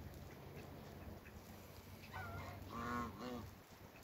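Domestic goose honking: three short calls starting about halfway through, the middle one loudest.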